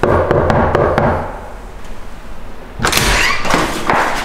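Knuckles rapping on an apartment front door in a quick series of knocks during the first second, then the door being unlocked and opened near the end.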